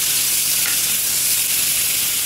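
Olive-oiled chicken breast fillets sizzling steadily on a hot ridged grill pan as they are seared and turned with tongs.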